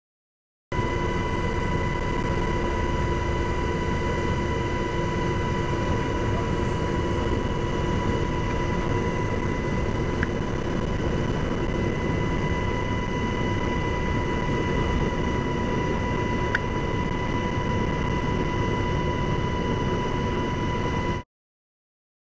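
Steady aircraft cabin drone, a constant engine hum with high whining tones over a rushing noise, as heard from aboard the aircraft filming from the air. It cuts in abruptly about a second in and cuts off just before the end.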